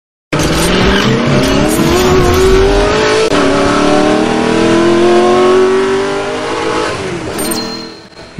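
Car engine revving as an intro sound effect: two long rises in pitch, the second beginning about three seconds in, then fading out near the end.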